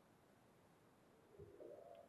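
Near silence: room tone, with a faint short low sound near the end.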